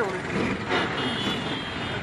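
Bus engine running amid road traffic, with a high steady beep lasting under a second that starts about three-quarters of a second in.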